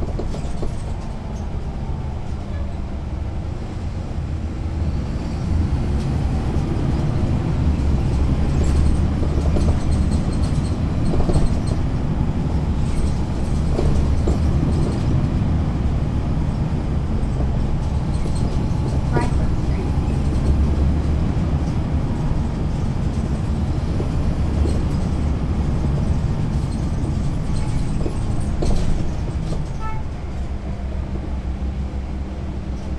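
Caterpillar C13 diesel engine of a NABI 40-SFW transit bus, heard from a rear seat inside the bus, running with a deep, steady rumble. The rumble grows louder about six seconds in and stays up.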